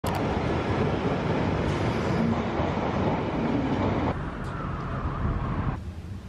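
London Underground tube train moving through the station past the platform: a steady, loud rumble of wheels and running gear. It drops off abruptly about four seconds in, then gives way to a quiet hum near the end.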